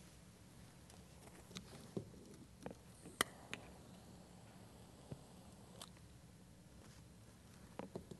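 Near silence: faint room tone with a few scattered light clicks and taps, the sharpest about three seconds in.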